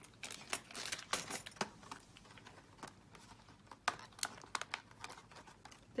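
Plastic embellishment packet crinkling and rustling as it is picked up and handled, with scattered small clicks and taps on the tabletop.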